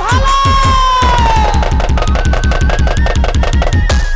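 Live Baul folk music: a dhol drum beats a fast, even rhythm throughout. Over it a long held high note slowly falls and fades in the first second and a half, and a thin melody line carries on after it.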